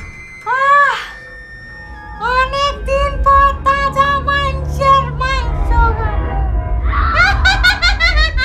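A woman's high-pitched cackling laugh as a petni (female ghost): one rising-and-falling whoop about half a second in, then a long run of even "ha-ha" laughs about three a second, and another burst near the end. A low rumbling music bed runs underneath.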